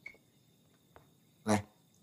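A man calls out a single short word, about one and a half seconds in. Before it, a quiet room with a few faint clicks.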